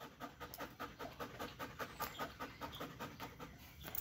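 Belgian Malinois panting quickly and steadily, close by.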